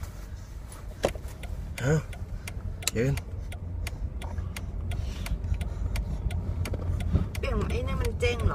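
Steady low rumble of a car's cabin with the engine running. Over it come scattered sharp clicks and knocks, and a small child's short rising vocal sounds twice early on, with more voice near the end.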